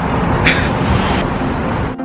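Steady traffic noise from cars passing on a busy city street, cutting off abruptly at the end.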